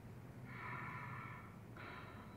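Slow, deep breathing taken on request for a stethoscope check of the lungs from the back: one long breath starting about half a second in and lasting a little over a second, then a second breath starting just before the end.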